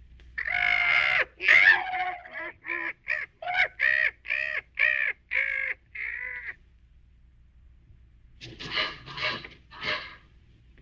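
A large crow-like bird cawing harshly: a quick run of about ten calls, the first two longest, then after a pause of about two seconds a few more calls near the end.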